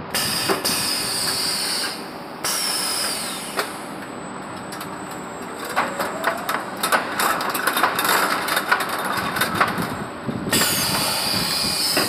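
Gabion mesh edge-winding machine running, winding the border wire onto hexagonal wire mesh. A dense clatter of rapid metallic clicks fills the middle, with stretches of steady hissing and a falling whistle at the start, about two and a half seconds in, and near the end.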